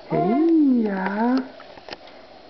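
A baby cooing: one drawn-out vocal sound of about a second and a half that rises and then falls in pitch.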